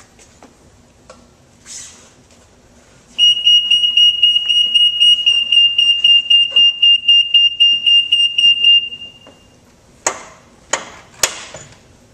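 A golf cart's electronic warning beeper sounding one loud, high-pitched beep with a fast flutter, held for about six seconds starting about three seconds in. A few sharp clicks follow near the end.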